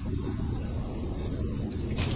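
A low, steady rumble that starts abruptly and then holds even.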